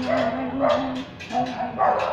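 A dog barking repeatedly, about four short barks in two seconds.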